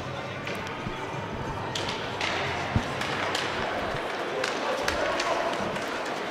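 Ice hockey rink ambience during a stoppage: a murmur of voices from the stands and benches, with scattered sharp clacks of sticks and pucks on the ice. A louder knock comes a little under three seconds in.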